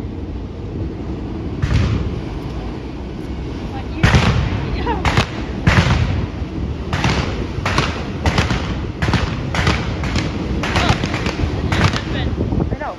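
Freight train of autorack cars rolling through a grade crossing: a steady low rumble with sharp wheel bangs over the rail joints and crossing, coming in quick irregular clusters about every half second.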